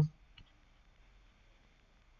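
Near silence with a single faint, short click about half a second in, just after the tail of a spoken word.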